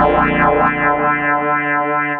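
Korg MS2000 virtual analog synthesizer playing sustained chords on a custom-programmed patch, its tone sweeping bright and dark again several times in a repeating pattern.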